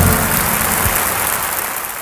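Audience applauding after the song ends, the applause fading out near the end.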